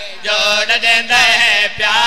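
A man chanting a qasida in praise of Ali, holding long, wavering notes between short breaths.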